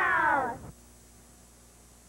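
A group of children cheering in a long, high shout that falls in pitch and fades out about half a second in, followed by near silence with a faint hum.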